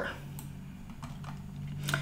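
A few faint, scattered clicks at the computer as the mouse or keyboard is worked, the loudest near the end, over a low steady hum.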